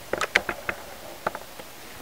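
A few light clicks and taps in quick succession during the first second, then one more click a little past the middle, over quiet room tone.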